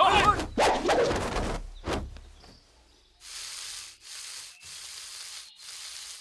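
Men's fighting shouts for the first second and a half, then a single hit about two seconds in. After a short lull come four short, rasping swishes in quick even succession, the sound effects of fast kung fu moves.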